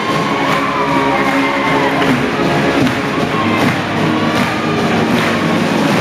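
Live rock band music with electric guitar and drums, over a crowd cheering.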